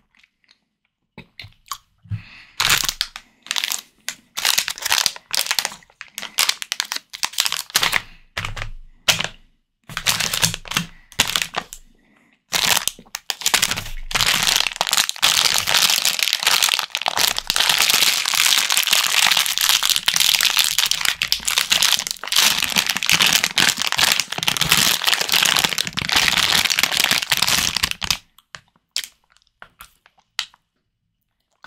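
Plastic candy bag being handled and pulled open, crinkling in short separate bursts at first, then in a dense unbroken stretch for about fifteen seconds, stopping shortly before the end.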